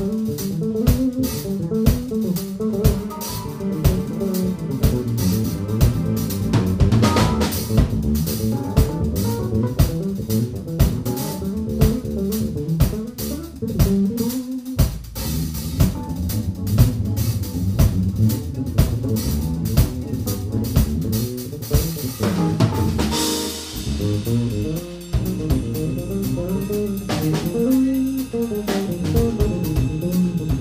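Live jazz-rock fusion: bass guitar playing busy lines over a drum kit, with a cymbal crash about two-thirds of the way through.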